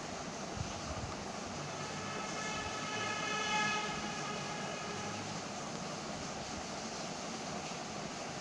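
Steady background noise, with a faint pitched tone that swells and fades about three to four seconds in.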